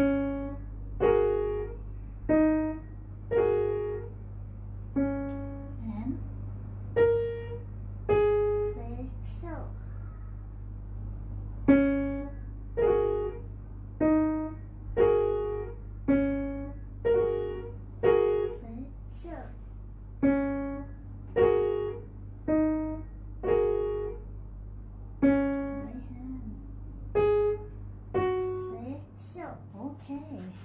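Upright piano played slowly by a child: a beginner's piece in even, separate notes about one a second, each struck and left to ring and fade.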